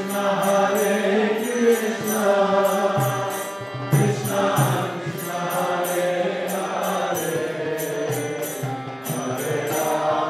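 Kirtan: a man singing a devotional chant over a steady harmonium, with a mridanga drum and small hand cymbals keeping a beat of about three strokes a second.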